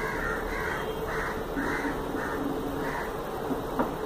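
A bird calling repeatedly, about six short calls in the first three seconds, then a single sharp click shortly before the end.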